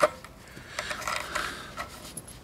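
A screwdriver backing the wood screw of a guitar strap button out of the guitar body, with faint scraping and small clicks.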